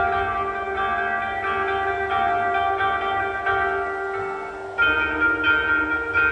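Koto, the Japanese long zither with movable bridges, plucked in a repeating pattern of ringing notes over a low rumble; near the end a louder new set of notes comes in suddenly.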